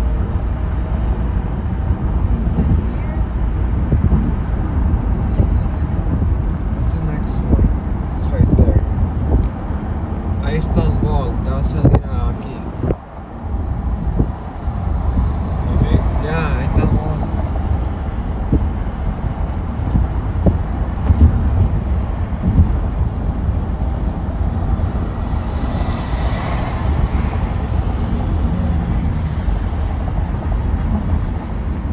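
Steady road and tyre noise with engine rumble heard inside a car's cabin at freeway speed, heaviest in the low end. Faint voices come in around the middle, and the noise briefly drops about 13 seconds in.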